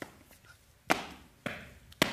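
A few sharp thumps on a floor, the first about a second in and the next about half a second apart, as a person gets onto hands and feet and starts to crab-walk.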